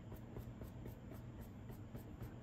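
Faint scratching of a paintbrush stroking acrylic paint onto a canvas panel, over a steady low hum.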